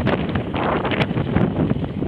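Wind buffeting the microphone of a camera on a moving bicycle, a steady loud rushing, with a few sharp clicks, one about a second in.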